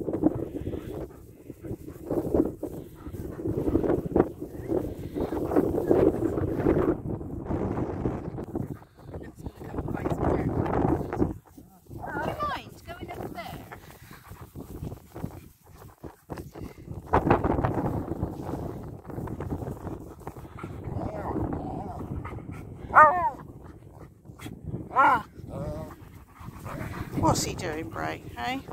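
German Shepherd dogs play-fighting, with rough growling that comes and goes. Near the end there are a few short, high yelps.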